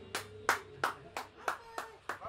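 Hand clapping in a steady even rhythm, about three claps a second, with a faint held note ringing underneath in a small room.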